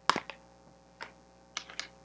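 Oracle cards being handled on a table: a sharp click or tap right at the start, then a few lighter clicks about a second in and near the end as cards are set down and picked up.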